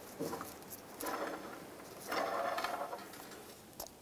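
Faint clicks, then two short scraping rattles of metal parts and tools being handled, about a second in and again from about two seconds in.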